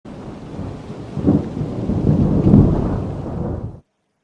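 Thunderstorm: heavy rain with rumbling thunder. It swells loudest about a second in and again around two and a half seconds, then cuts off abruptly just before the end.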